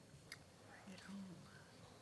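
Near silence in the room, with a faint distant murmur of low voices and a soft click.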